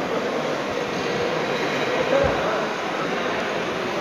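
Steady background noise with a faint, even hum, and a brief low thump about two seconds in.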